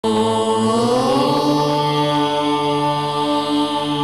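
Devotional ident music: a chanted vocal tone held over a steady drone, its pitch gliding upward about a second in and then sustained.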